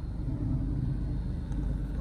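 Low, steady rumble of a car's engine and road noise heard from inside the cabin while driving.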